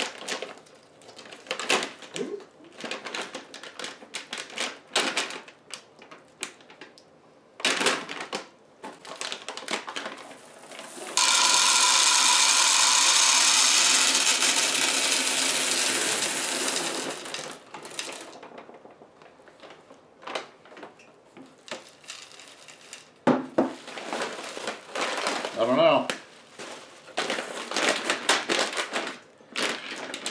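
M&M's candies pour from a bag into a hand-turned wooden bowl in one steady rush lasting about six seconds, fading toward the end. Before and after it come scattered crinkles and clicks of plastic candy bags and bubble wrap being handled and cut open.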